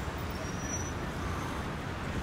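Steady street ambience, a low even hum of traffic noise.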